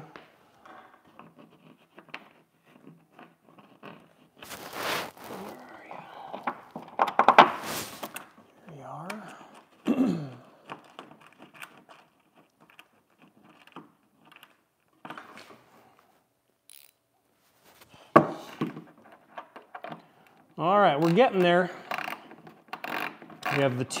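Handling noises from work on a large RC jet fuselage: scattered scrapes and knocks, with louder scraping about five and seven seconds in and a sharp knock about eighteen seconds in.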